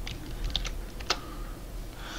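A few computer keyboard keystrokes, short clicks as coordinates are pasted into a search box, the clearest about a second in.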